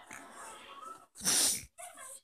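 Pug puppy breathing and snuffling close to the microphone as it mouths a hand, with a loud, short blast of breath a little over a second in.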